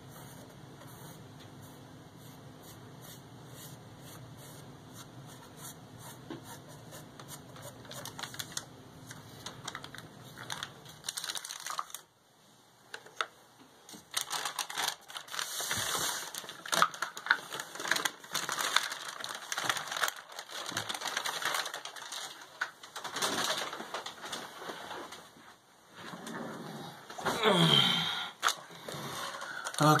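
Clicks, taps and rustles from handling a paintbrush, a wooden board and a paper drop cloth. They are faint over a low hum for the first twelve seconds, then louder and busier, with a brief pitched sound near the end.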